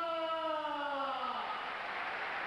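A ring announcer's voice drawing out the end of a boxer's name in one long call that falls in pitch and fades after about a second and a half. Arena crowd noise follows it.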